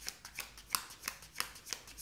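A deck of cards being shuffled by hand: a quick, irregular run of light card slaps and rustles, about six a second.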